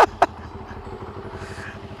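CFMoto NK400 motorcycle's parallel-twin engine idling steadily while the bike waits, a low even rumble.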